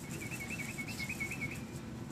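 A bird calling in the background: a quick run of about seven short whistled notes lasting about a second and a half.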